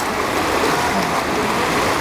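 Pool water churning and splashing steadily as a person hops fast in waist-deep water.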